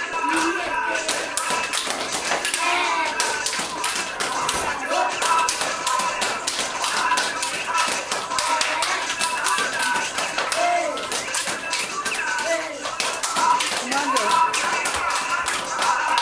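Gumboot dancing: boys slapping their rubber boots and stamping on a tiled floor in a rapid, continuous run of slaps, starting about a second in, with voices calling over it.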